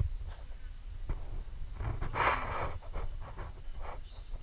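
Bee smoker's bellows squeezed, giving one breathy puff of air and smoke about two seconds in and a shorter hiss at the end, over light knocks of handling and a low steady rumble.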